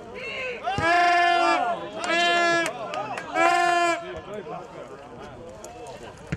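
Three loud horn blasts, each under a second and held at one steady pitch, about a second apart, over faint shouting voices.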